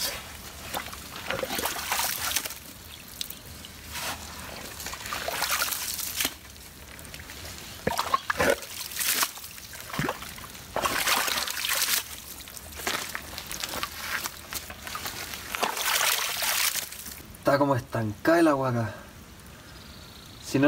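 Muddy water trickling and sloshing as it runs along a freshly dug drainage trench in soft mud, with louder noisy surges every few seconds. The water is draining out of a flooded patch of ground.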